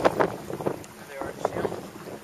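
Wind buffeting the microphone and choppy water splashing against a small boat's hull, coming in uneven gusts and slaps.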